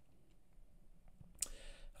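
Quiet room tone in a short pause between spoken sentences, with a single sharp click about one and a half seconds in.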